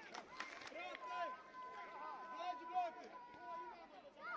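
Voices of children and adults calling out across a football pitch, with one long held call from about a second in until near the end and a few sharp knocks in the first second.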